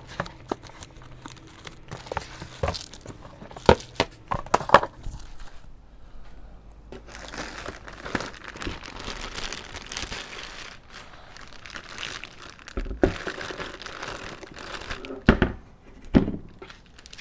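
A plastic bag crinkling as it is pulled off a car amplifier, after a few sharp knocks of foam and cardboard packing being handled. Two dull thumps come near the end as the amp is set down on a plastic case.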